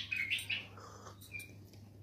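A pet bulbul chirping: a quick run of short calls in the first half second, then one brief note about a second and a half in.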